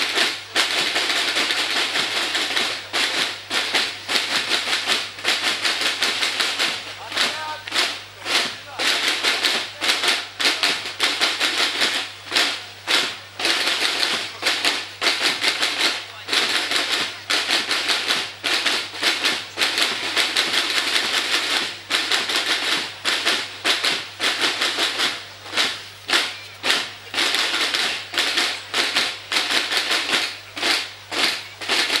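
Snare drums of a cadet drum corps beating a steady marching rhythm of quick, sharp strikes.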